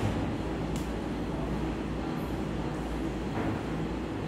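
Steady low hum and rumble of room noise, with one faint brief tick about three-quarters of a second in.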